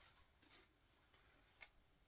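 Near silence: room tone, with one faint tap about one and a half seconds in.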